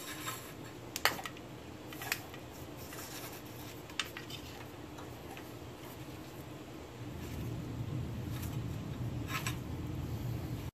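Hands feeding a thin wire along a truck's underbody, with a few light clicks and taps about 1, 2, 4 and 9 seconds in, over a low rumble of handling noise that grows louder after about seven seconds.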